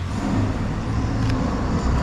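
A car driving past on the street, over steady road traffic noise.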